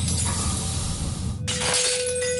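Wine glass shattering into many fragments, a dense tinkling crash with a sharper break about one and a half seconds in. From that break a steady held note sounds: the guitar note, tuned to the glass's own pitch of nearly 500 vibrations a second, played at it through a loudspeaker to make it resonate until it breaks.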